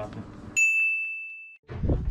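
A single high, clear ding, bell-like and added in editing. It starts sharply about half a second in, fades over about a second and cuts off, with no room sound behind it.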